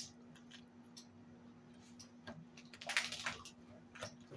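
Quiet table sounds of a knife cutting on a china plate: a few faint clicks, then a short scraping rustle about three seconds in, over a faint steady hum.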